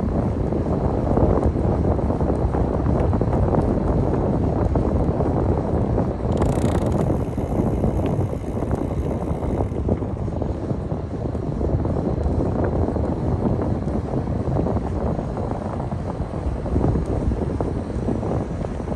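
Wind buffeting the microphone of a camera on a moving bicycle, a steady low rumble, with a short hiss about six and a half seconds in.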